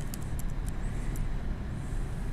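Steady low rumble of room noise with several light ticks in the first second or so, from a stylus tapping on a tablet screen.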